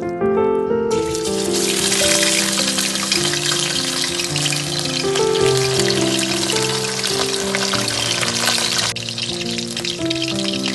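Halved tonguefish sizzling in hot cooking oil in a wok, a loud, dense crackling hiss that starts suddenly about a second in.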